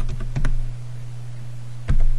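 Computer keyboard being typed on: a few quick keystrokes in the first half second, then a single louder key press near the end, the Enter key that sends the reboot command.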